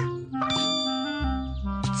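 A bright, bell-like ding struck about half a second in, ringing on and slowly fading, over soft background music.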